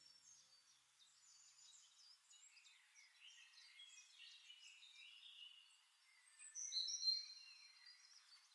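Faint birdsong: scattered chirps and short whistles, a little louder near the end.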